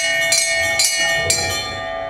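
Hindu temple bell rung by hand at a shrine during worship: four quick strikes, each leaving a ringing tone that lingers. The ringing fades near the end.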